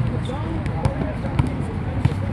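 A basketball being dribbled on a hard court: a few sharp, unevenly spaced bounces.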